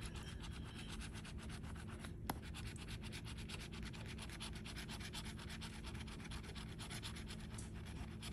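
A handheld scratcher tool scraping the latex coating off a paper scratch-off lottery ticket in quick, faint, repeated strokes. There is a brief pause with a small tap about two seconds in.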